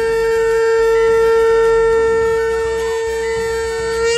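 Conch shell (shankh) blown in one long, loud, steady note, held without a break and swelling slightly in loudness midway.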